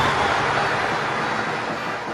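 Steady traffic noise from a slow parade of cars and motorbikes, easing slightly toward the end.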